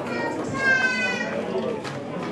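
Hall chatter of an audience with children's voices; one high child's voice calls out, falling slightly, from about half a second in.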